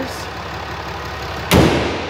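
A 6.7-litre Cummins inline-six turbo-diesel idling steadily, then about one and a half seconds in a loud slam as the hood is shut, after which the engine sound is muffled.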